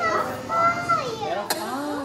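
A toddler's high-pitched voice babbling without words, its pitch gliding up and down, with one short click about one and a half seconds in.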